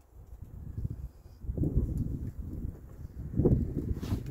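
A man drinking beer from a glass in gulps, with louder swallows about one and a half seconds in and again about three and a half seconds in.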